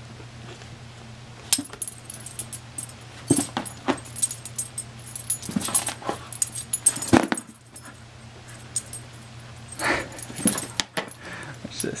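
A dog's metal collar tags jingling in short, irregular spells as it darts and pounces after a laser dot, with scuffs of its paws on carpet.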